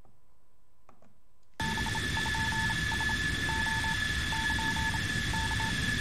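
Radio static with a steady high whine and runs of short beeps, a space-mission radio transmission effect that opens a music video before a launch countdown. It comes in suddenly about a second and a half in, after a faint hum.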